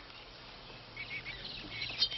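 Faint birds chirping in the background ambience, a run of short chirps in the second half over a low steady hum.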